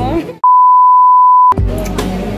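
A single steady electronic beep, one pure tone about a second long, with all other sound cut out while it plays. Background music and voices run before and after it.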